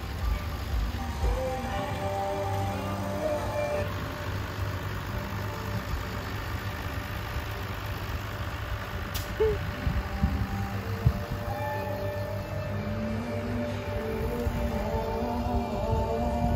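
Farm tractor's diesel engine running steadily as it tows a boat trailer past, with music playing over it.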